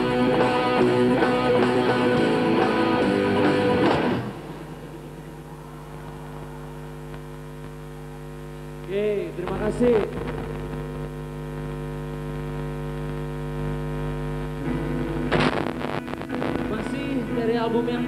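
Live rock band playing loudly, stopping abruptly about four seconds in. A steady hum of several held tones, like a sustained keyboard chord, then hangs over the stage and shifts to a new set of tones later on, with a few brief vocal sounds in between.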